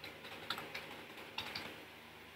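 Computer keyboard typing: a few faint, unevenly spaced keystrokes in the first second and a half, then quiet.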